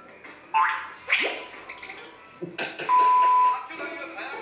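Soundtrack of an edited fan compilation video: voices with added sound effects, including two quick falling swoops and, about three seconds in, a loud steady electronic beep lasting about half a second.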